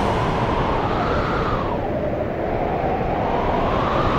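Dramatic sound effect from a TV background score: a loud, noisy rumbling swell that rises, falls away about two seconds in, and rises again.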